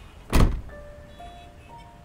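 A car door shuts with one heavy thump just after the start, followed by soft, sustained music notes entering one by one.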